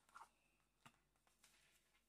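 Near silence: room tone, with a couple of faint brief clicks.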